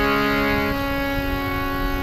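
Harmoniums playing sustained chords in Sikh kirtan, the notes held steady, with some lower notes dropping out under a second in.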